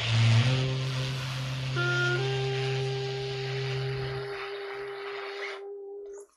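Improvised saxophone and trumpet duet: a long-held low note under a few higher sustained notes that change about half a second in and again around two seconds. The notes fade and stop near the end.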